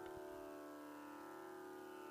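Faint, steady tambura drone, the sustained pitch reference of a Carnatic concert.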